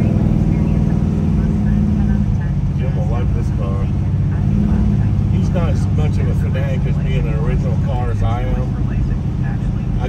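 A 1970 Chevelle SS 454's big-block V8 running steadily as the car cruises, heard from inside the cabin.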